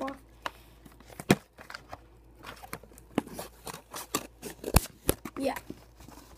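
Scissors snipping through the flap of a cardboard toy box, with crinkling of plastic packaging: an irregular run of sharp snips and crackles, the loudest about a second in and two more close together near the end.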